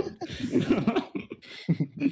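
Voices of several people talking over one another and chuckling, with no clear words.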